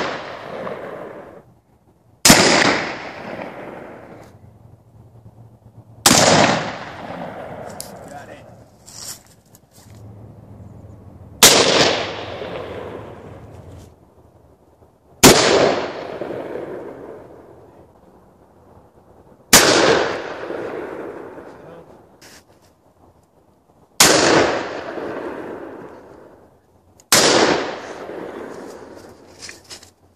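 An 1858 Remington cap-and-ball black powder revolver (Pietta reproduction) fired seven single shots, one every three to five seconds. Each loud crack trails off in a long echo.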